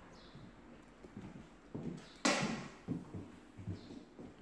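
Footsteps on a bare polished timber floor: a run of hard heel strikes about half a second apart, the loudest a little past two seconds in.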